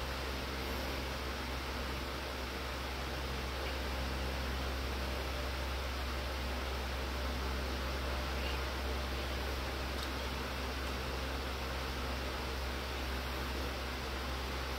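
Steady background hiss with a low hum underneath: unchanging room noise with no distinct events.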